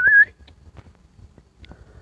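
A person whistling a warbling call to a dog, which stops about a quarter second in. After that only a low background with a few faint clicks.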